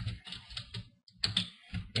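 Rapid small clicks and rattles of thin cables and plastic parts as Wi-Fi antenna cables are pulled free inside a laptop's plastic base. The clicking comes in two bursts with a short break about a second in.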